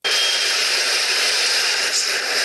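A loud, steady rushing hiss that cuts in abruptly out of silence, with no tone or rhythm in it.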